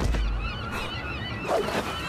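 A heavy low thump, then a flock of gulls squawking in quick, short, repeated calls, with another knock about one and a half seconds in.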